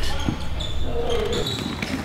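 Basketball bouncing on a hardwood gym floor, with short high sneaker squeaks and players' voices in the hall.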